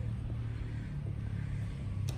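Steady low hum of a running engine, without change.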